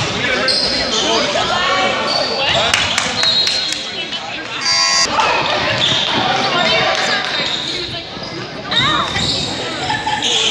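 Basketball game on a hardwood gym court: many short, high-pitched squeaks of sneakers on the floor and a basketball dribbling, with voices echoing in the gym.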